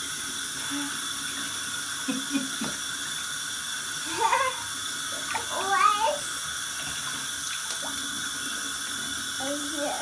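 A bathtub spout running steadily, a thin stream pouring into bath water. A toddler's high voice cuts in briefly twice around the middle.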